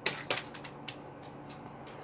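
A handful of dry food pellets rattling as they are scooped up: a sharp clicking rattle at the start and another click just after, then a few faint scattered ticks.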